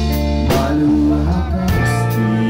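Live rock band playing: electric guitars holding sustained notes over bass guitar and a drum kit, with sharp drum hits about half a second in and again near the end.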